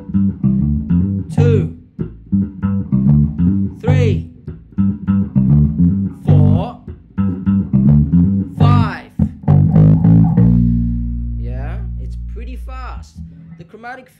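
Electric bass guitar playing a funk groove in G: a rhythmic pattern of short plucked low notes with a man counting the bars aloud over it. After about ten seconds it runs through a chromatic fill and lands on a low B flat that is held and rings for about two and a half seconds.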